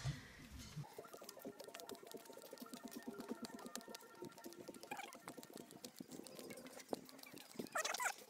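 Footsteps and rustling on a dirt path while walking, quiet against faint background sounds.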